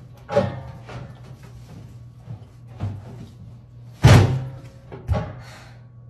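Knocks and thumps from a stainless steel step trash can as a heavy full bag is tugged at inside it: four sharp knocks, the loudest about four seconds in.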